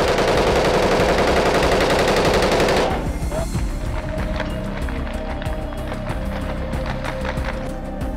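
A burst of rapid automatic gunfire lasting about three seconds, over a steady low music bed. When the shots stop, the music carries on with a held tone.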